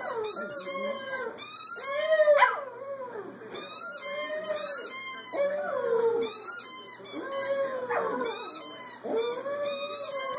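Small dog howling: a run of drawn-out howls, each about a second long, rising and falling in pitch, with short breaks between.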